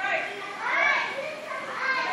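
Children's voices, high-pitched chatter and calling out, loudest a little before the middle.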